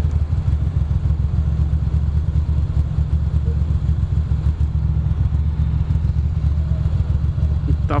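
2006 Ducati Monster 620's air-cooled L-twin engine idling steadily while the bike sits stopped in traffic.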